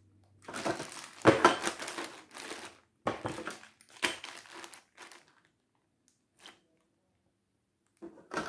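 Plastic bags of 3D puzzle pieces crinkling and rustling as they are handled and packed into a cardboard box, in a run of bursts over the first five seconds that grows sparser.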